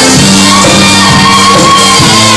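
Loud live band music, a saxophone section playing over bass and keyboards, with a long held high note from about half a second in.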